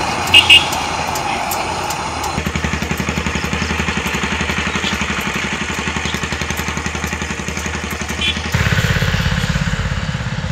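Street traffic: a vehicle engine running close by with a low pulsing sound, growing louder about eight and a half seconds in, with two short beeps about half a second in.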